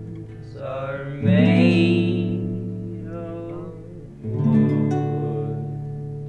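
Lo-fi folk song: acoustic guitar chords strummed and left to ring out, one about a second in and another just past four seconds, with a voice singing over them.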